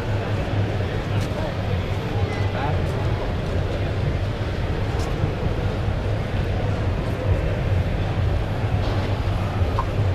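Background babble of a crowded indoor exhibition hall: many indistinct voices over a steady low rumble.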